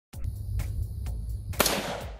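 A single rifle shot from an AR-style rifle, a sharp crack about one and a half seconds in that trails off. It is heard over electronic music with a steady beat.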